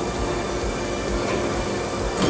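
Steady mechanical rumble and hum of running industrial machinery on a plastics injection molding shop floor.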